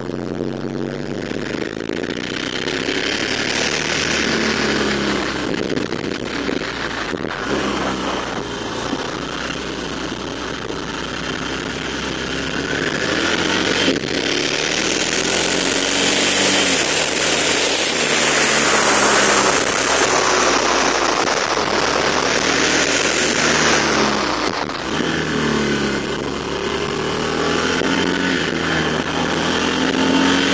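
Motorcycle engine running on the move, its pitch rising and falling as the throttle opens and closes, under wind rush on the microphone that swells in the middle and eases again.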